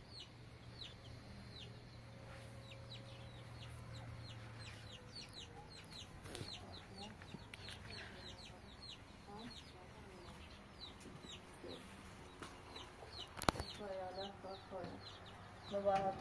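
Faint, high chirping of birds: short falling peeps repeating two or three times a second. A low hum runs under the first few seconds, and a single sharp knock comes near the end.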